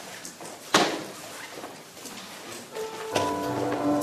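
A single sharp knock, then about three seconds in an electronic keyboard begins playing held, organ-like chords: the opening of a hymn introduction.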